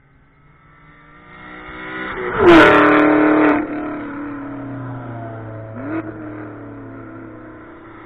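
Car engines at speed on a race track. The sound builds to a loud pass-by between about two and a half and three and a half seconds, dropping in pitch as the car goes past, then cuts off suddenly. A quieter engine note carries on after it, with a short rev blip near six seconds.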